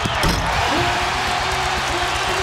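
Basketball arena crowd cheering, with the impact of a dunk on the rim and the ball bouncing just after the start. A held, slowly falling tone sounds over the crowd for about a second near the middle.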